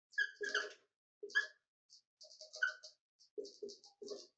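Dry-erase marker squeaking on a whiteboard while words are written: a string of short, separate squeaks and scratches, one per pen stroke.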